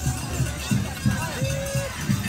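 Parade music: a drum beating a steady rhythm, about two to three beats a second, under crowd chatter, with a single held note a little past halfway.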